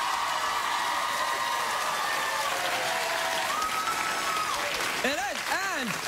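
Studio audience applauding for about five seconds, with one held cheer rising out of the crowd partway through. A man starts talking near the end.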